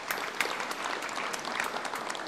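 Audience applause: many people clapping together, a dense stream of hand claps.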